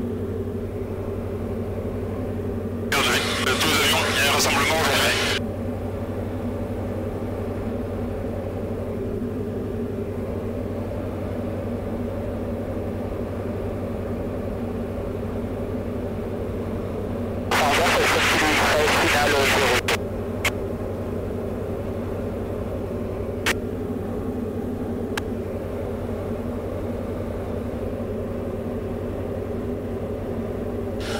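Diamond DA40 light aircraft's piston engine and propeller droning steadily as heard in the cabin. Two loud bursts of hissing noise of about two seconds each come about 3 and 17 seconds in, followed by a few sharp clicks.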